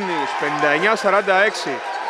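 Mostly a male sports commentator's voice speaking loudly over the game, with one sharp knock about a second in.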